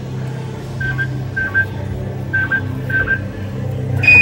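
R.G. Mitchell NASA Space Rocket kiddie ride's sound board playing its mission-control soundtrack between voice clips: two pairs of short, high electronic beeps over a steady low hum.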